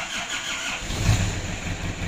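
1993 Isuzu Panther's diesel engine turning over on the starter and catching about a second in, then idling with a steady low pulse.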